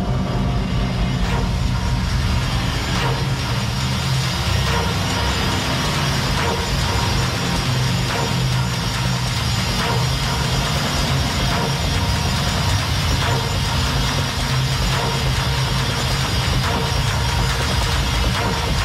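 Loud, steady techno track playing in a DJ mix, with a heavy low end.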